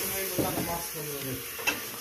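Pork ribs sizzling as they fry in a pan with olive oil, a steady hiss, with a short click near the end.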